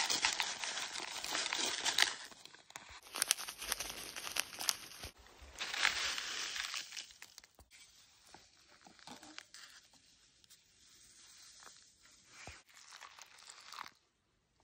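Paper and plastic food packets crinkling and tearing as they are opened and shaken out into a bowl and a mug, in loud spells during the first half and softer rustles after.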